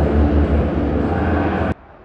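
Loud, steady roar of stadium sound after a goal, heavy in the deep low end, cutting off abruptly near the end.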